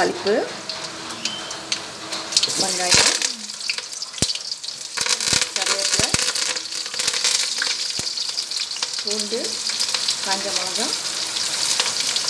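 Tempering frying in hot oil in a kadai: a steady sizzle with spattering crackles as seeds, onion, curry leaves and chillies go in. A few sharp knocks sound in the middle.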